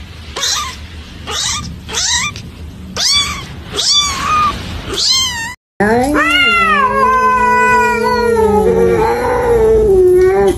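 A kitten mewing, about seven short high mews in a row. Then a cat yowls, one long wavering drawn-out call of about four seconds, a warning yowl at another cat it is facing.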